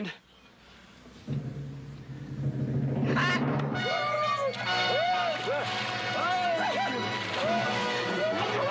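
Dramatic orchestral film score: a low drum swell about a second in gives way to a loud, busy orchestral burst from about three seconds in. Water splashes and voices can be heard under the music near the end.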